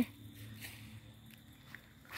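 Faint footsteps on dry garden soil, two soft steps about three quarters of a second apart, over a quiet outdoor background.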